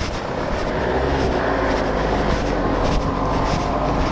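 Steady engine noise of a motor vehicle close by, swelling slightly at first and easing near the end.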